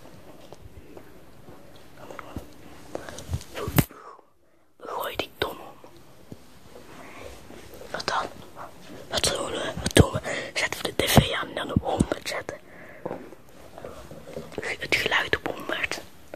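Hushed whispering, with scattered knocks and clicks from a handheld camera being carried about. Everything drops out briefly about four seconds in.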